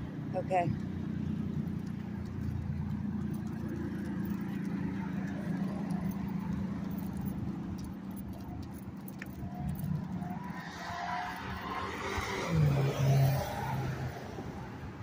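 Road traffic: cars running along a busy street in a steady low rumble, with a louder vehicle passing close near the end.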